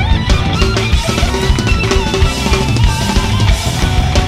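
Live hard rock band playing an instrumental passage: a drum kit with frequent bass drum hits, under electric guitar lines, loud and continuous.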